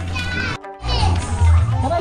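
Children's voices calling and chattering over background music with a steady low bass. All sound drops out briefly a little over half a second in.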